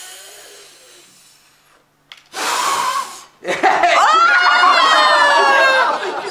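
A woman blowing hard at a row of lit candles: a long rush of breath that fades over about two seconds, then a second, shorter and stronger puff. About three and a half seconds in, a long high-pitched cry with laughter takes over as the blowing fails to put the candles out.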